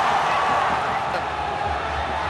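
Steady stadium crowd noise from a football match: a continuous murmur of many voices with no single clear event.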